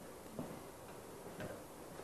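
A quiet pause with faint room noise and two soft ticks about a second apart.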